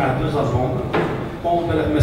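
A man speaking into a microphone.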